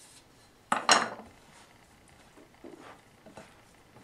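Two quick knocks of a wooden spatula against a ceramic mixing bowl about a second in, followed by faint soft sounds of dough being worked in the bowl.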